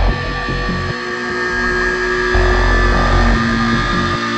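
Background music: held steady tones over a heavy bass line.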